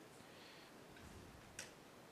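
Near silence with a single faint, sharp click about one and a half seconds in: a computer mouse click.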